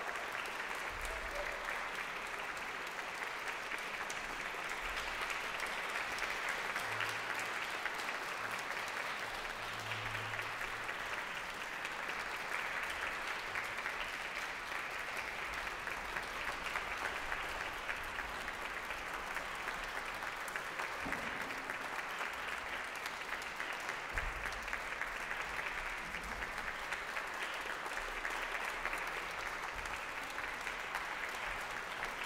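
Audience applauding: steady, sustained clapping from a full hall.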